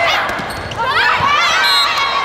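Volleyball rally on an indoor court: a ball strike near the start, then a flurry of high, bending squeaks from players' shoes skidding on the court surface in the second second.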